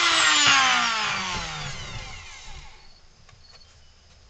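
A handheld rotary tool spinning down after being switched off: its whine falls steadily in pitch and fades out over about two and a half seconds.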